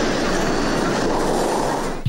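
Steel mill machinery running: a dense, steady clatter of steel knocking against steel as sheet is handled and fed through the rollers.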